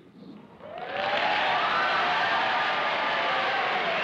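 Studio audience applauding, with some laughter, swelling up about a second in and then holding steady.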